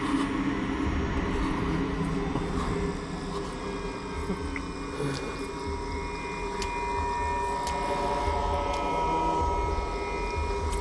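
Horror film score: a sustained, ominous drone over a low uneven rumble, with high held tones coming in a few seconds in and staying.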